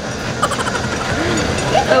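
Steady rushing noise of riding in an open-sided shuttle vehicle, with faint voices of other passengers.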